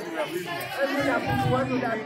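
Speech only: several voices talking at once, in lively chatter.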